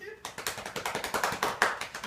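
A rapid series of sharp clicking taps, about ten a second, starting a quarter second in.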